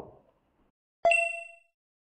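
A single bell-like ding, the chime of a logo sting, struck once about a second in and ringing out over about half a second.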